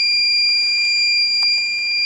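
Iliminator 1750 W inverter's low-battery alarm screaming, one steady high-pitched tone. The battery bank has sagged to 10.6 volts under load, and the alarm warns that the inverter is about to shut down.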